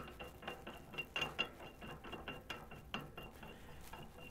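Irregular light metallic clicks and scrapes as a metal booster (flux) tank is fitted and screwed onto its threaded stem on a hydrogen torch generator.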